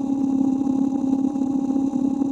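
A steady electronic buzz with a fast, even rattle in it: a sound effect standing for a stream of digital data bits.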